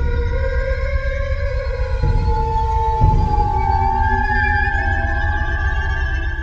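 Eerie intro music: long held tones that slowly bend in pitch over a steady deep rumble.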